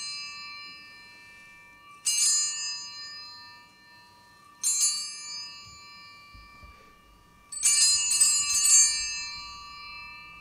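Altar bell rung at the elevation of the consecrated host, just after the words of consecration: a ring about two seconds in, another near five seconds, and a quick flurry of shakes near the end, each ringing on and fading slowly.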